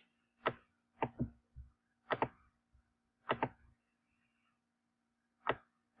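Sharp clicks from working a computer at the desk: about nine, several in quick pairs, with a longer gap before the last one. A faint steady hum runs underneath.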